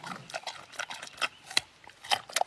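Raw carrot being bitten and chewed: a string of crisp, irregular crunches.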